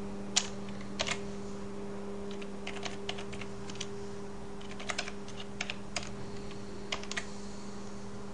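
Computer keyboard keys being typed in irregular short runs of clicks, entering numbers into a calculator program, over a steady low hum.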